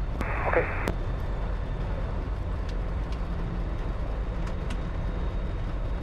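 The Comco Ikarus C42C ultralight's engine and propeller running at low taxi power, heard from inside the cockpit as a steady low drone. A brief voice over the radio comes just after the start.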